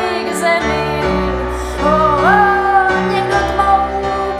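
Live music: a woman singing a slow song over keyboard and clarinet, her voice gliding upward about two seconds in.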